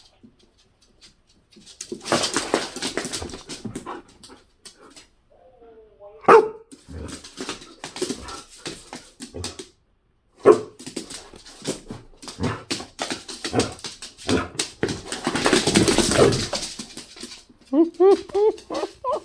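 Pet dogs barking and whining, excited over a ball. There is a short rising-and-falling whine about six seconds in, amid irregular rustling and clicking from their movement.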